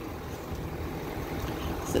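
Steady low hum of an idling vehicle engine under faint outdoor background noise.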